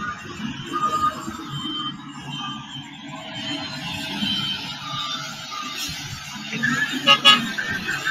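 Heavy road-construction machinery running, with the engines of a dump truck and a road roller working a roadbed, mixed with music and some voices.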